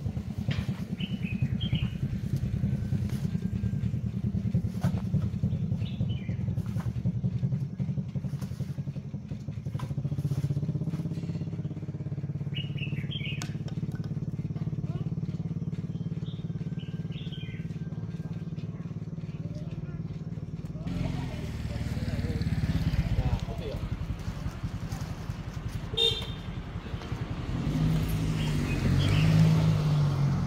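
Small motorcycle engine running, its low note shifting twice, growing louder near the end as a motorcycle pulls up. A few short bird chirps now and then.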